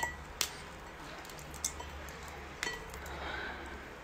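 Soy-marinated raw crab being pried apart by hand: three short, sharp shell cracks about a second apart, over a low steady hum.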